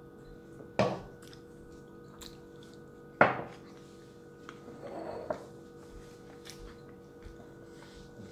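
Two sharp knocks of hard things set down on a kitchen counter, about two and a half seconds apart, the second louder, followed by a brief softer rustle and a small click, over a steady hum.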